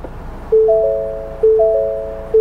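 Ford Bronco instrument-cluster warning chime: a quick rising three-note ding that fades, heard twice about a second apart, signalling that the front sway bar has disconnected.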